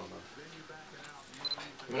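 Quiet talking in a room, with a few small sharp clicks and a brief high beep about one and a half seconds in.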